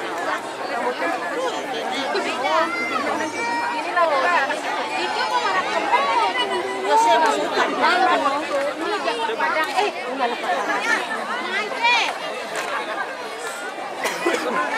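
A large crowd chattering: many voices talking at once, with some higher-pitched calls standing out.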